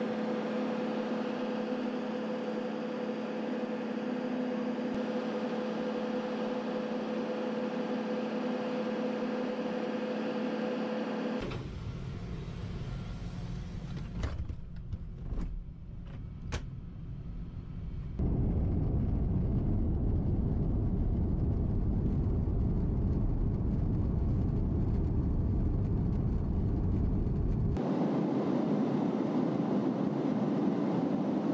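RAF Voyager tanker aircraft noise in three stretches: a steady hum with a held whine as it sits on the ramp, then about a third of the way in a quieter low rumble inside the cabin with a few sharp clicks, and from about halfway on a louder, steady low rumble of the aircraft in flight.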